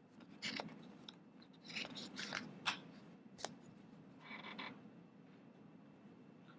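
A few faint, scattered clicks and rustles over quiet courtroom room tone.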